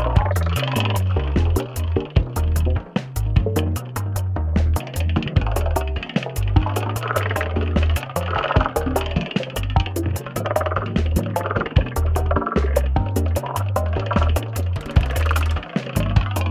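Electronic music played on a modular synthesizer, driven by a step sequencer: a pulsing synth bass and shifting sequenced note patterns over a programmed drum beat, with a steady high tick about four times a second.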